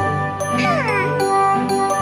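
Light, tinkly children's cartoon background music with bell-like notes. About half a second in there is a short falling glide, a cartoon sound effect.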